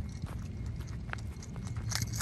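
Footsteps of a person running backwards across grass: a quick, uneven run of light thuds and ticks, about five a second, over a steady low rumble.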